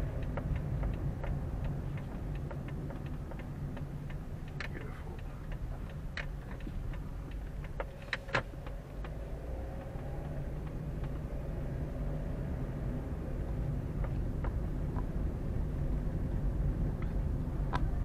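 Car driving at low speed, heard from inside the cabin: a steady low engine and road rumble, with scattered sharp clicks and ticks throughout and a louder pair of clicks about eight seconds in.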